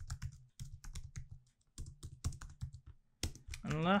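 Computer keyboard typing: quick runs of keystroke clicks with short pauses between them.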